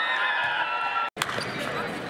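Basketball game in a large indoor hall: a ball bouncing on the court and sneakers squeaking, with voices around. Over the first second a held, pitched call or tone runs, then cuts off suddenly.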